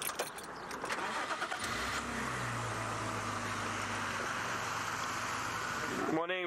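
Vehicle engine running while driving on a dirt road, with tyre and wind noise; a steady low engine hum comes in about two seconds in and holds.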